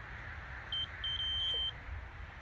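Electronic carp bite alarm sounding: one short beep, then a continuous tone lasting about half a second.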